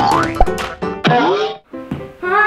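Cartoon-style boing sound effects over cheerful background music. A rising pitch glide comes first, then a sharp thump about half a second in, then a falling glide about a second in.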